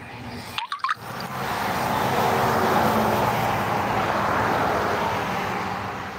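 A vehicle passing on the road: engine and tyre noise swell over the first two seconds, hold, then fade away near the end. About a second in there are a few short, high chirps.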